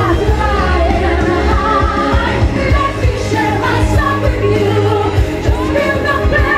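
A woman singing a pop song live into a handheld microphone over loud amplified backing music with a steady beat.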